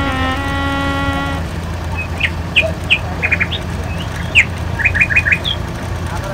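Birds chirping in short, quick calls, with a rapid run of four about five seconds in, over the steady low hum of a moving vehicle. A held keyboard-like music note ends about a second and a half in.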